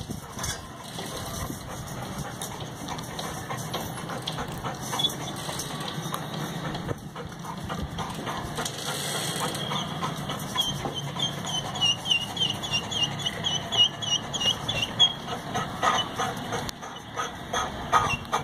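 Steady low background hum, with a quick run of high chirps, about four a second, from about ten to fifteen seconds in.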